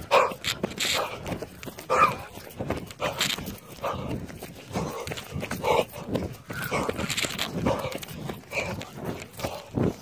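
Running footsteps through grass and brush with the rattle of a handheld phone, broken by repeated short cries.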